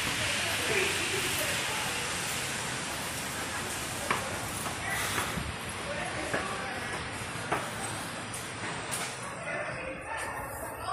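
A steady rushing hiss throughout, with a few scattered footstep taps on stairwell steps and faint voices.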